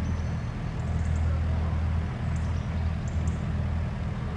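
Steady low rumble with a few faint, short high chirps.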